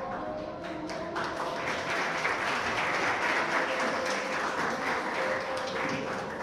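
An audience clapping, starting about a second in, swelling and then thinning out near the end.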